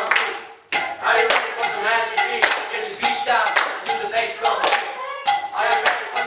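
Hand clapping mixed with a voice singing. Both stop briefly about half a second in, then the clapping resumes in uneven strokes under the singing.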